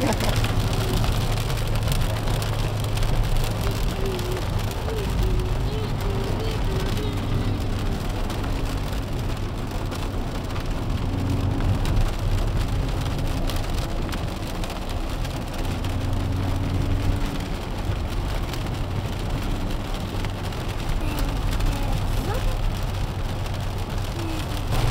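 Dodge Challenger R/T's 5.7-litre V8 heard from inside the cabin while driving, a steady low engine note whose pitch rises and falls a little, over the hiss of rain and tyres on a wet road.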